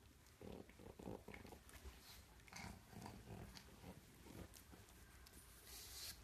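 Faint sounds of a pug mouthing and wrestling a plush toy on bedsheets: short breathy noises and fabric rustles in quick, irregular spurts starting about half a second in.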